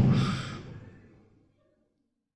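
A man's breathy sigh into a close microphone, trailing off and fading out about a second in.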